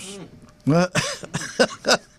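A man's voice in short, breathy bursts, about three or four in a second, after a brief voiced sound.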